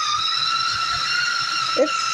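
Small electric blender motor running steadily with a high-pitched whine as it grinds hummus.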